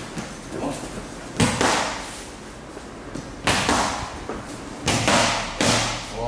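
Boxing gloves smacking focus mitts during pad work: about five sharp hits, irregularly spaced, each with a short ring of room echo.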